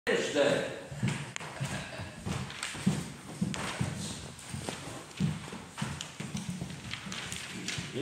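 Irregular footsteps and light thuds on a wooden floor, roughly two a second, as a person moves about and sets up at a music stand.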